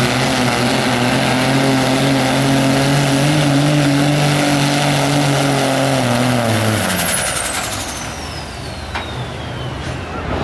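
Diesel pickup engine, the Cummins straight-six of a second-generation Dodge Ram, running flat out while pulling the sled, its pitch sagging a little under the load. About seven seconds in the throttle is lifted and the engine drops away, leaving a high whistle that glides steadily down as the turbo spools down.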